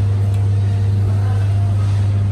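Steady, loud low hum of a floor-standing air-conditioner unit running, one unchanging low drone.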